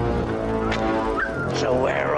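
Film score music with a flock of penguins squawking and braying, the calls starting about two-thirds of a second in and bending up and down in pitch.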